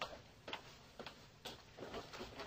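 Footsteps walking away across a hard floor, about two steps a second.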